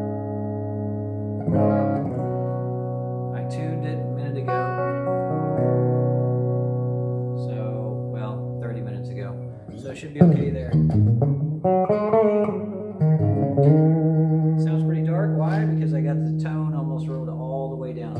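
SG Junior-style single-pickup solid-body electric guitar played through a Marshall amp, clean tone with a little reverb. Ringing chords change every few seconds, then from about ten seconds in come louder picked notes with string bends.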